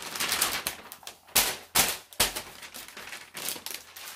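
A large sheet of parchment paper rustling and crackling as it is handled, with three louder, sharper crackles about halfway through and a run of quick small crinkles after them.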